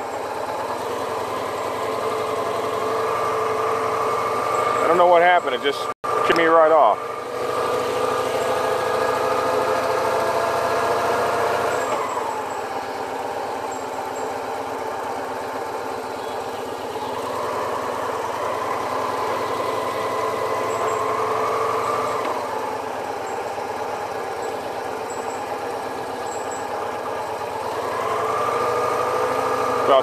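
Motorcycle engine running steadily, its pitch dropping about twelve seconds in and rising and falling again later as the revs change.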